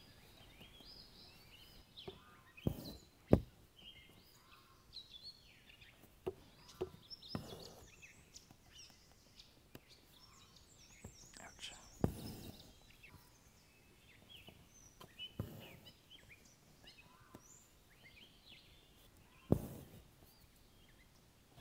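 Songbirds chirping and singing, with several short sharp thumps scattered through, the loudest a little over three seconds in and again about twelve seconds in.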